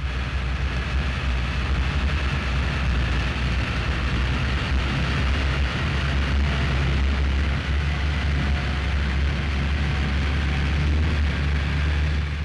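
Bluebird K4 racing hydroplane running flat out across the water: a loud, steady engine noise with a deep low hum underneath, unchanging throughout.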